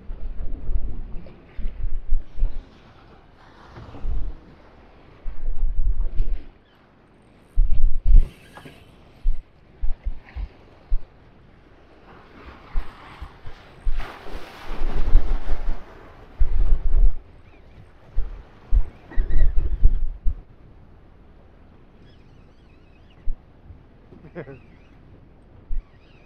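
Wind gusting over the microphone in irregular low blasts, over the wash of a choppy sea around a small open boat. About two-thirds of the way in there is one longer, hissier rush.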